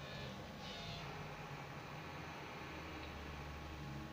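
Steady low engine drone and road noise inside a moving city bus, with a brief higher hiss in the first second.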